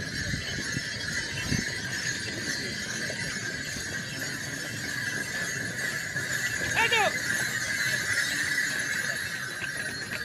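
Steady murmur of a crowd; about seven seconds in, a horse gives one brief, high squeal.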